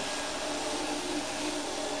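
Floor edger sander running steadily, its disc grinding down a hump in a plywood subfloor.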